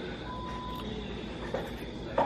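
A single short, steady beep over a low, steady background hum, followed by a faint click.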